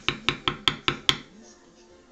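A mallet tapping a steel leather-stamping tool into leather, about five even taps a second. The taps stop a little over a second in.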